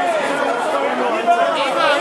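Indistinct chatter: several people talking over one another, no single voice clear.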